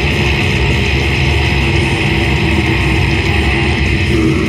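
Slam death metal band playing live, loud and dense throughout, with distorted electric guitar over drums.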